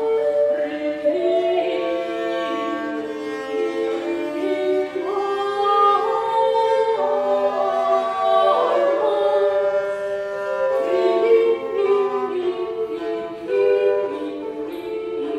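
Concert recording of an early-music ensemble performing medieval music: several sung parts moving over one another on held notes.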